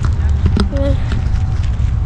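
Footsteps on gravel over a steady low rumble, with a short snatch of a voice about half a second in.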